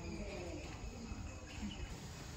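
Steady background chirring of insects.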